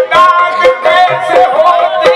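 Qawwali: a male voice sings a long, wavering, ornamented line over harmonium drones, with a few tabla strokes.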